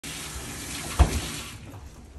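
Kitchen faucet running onto hands over a stainless steel sink, with a sharp thump about a second in; the water stops about a second and a half in.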